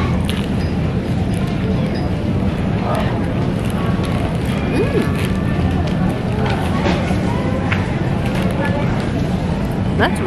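Airport terminal background noise: a steady low hum with distant, indistinct voices.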